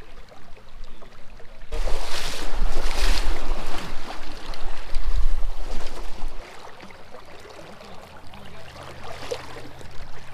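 Water sloshing and splashing as someone wades through a shallow river, loud for about four seconds starting about two seconds in, with low rumbling from the movement. After that it settles to the quieter steady wash of the flowing river.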